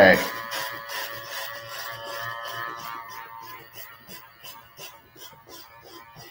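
Electric hair clipper running with a steady buzz as it cuts away excess hair on a mannequin head. The buzz is strongest for the first few seconds, then fades.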